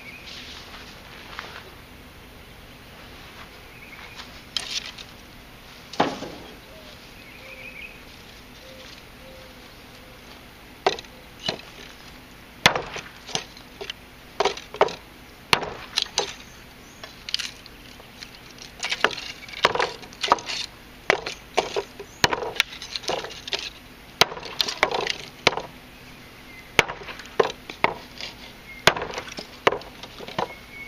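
Brightleaf chopper knife with a thin 0.013-inch edge chopping small-diameter dry hardwood on a wooden block: a few separate chops at first, then a run of sharp chops about one or two a second through the second half.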